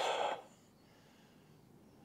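A short breathy exhale trailing off a spoken word, fading within the first half-second. Then near silence: faint outdoor background.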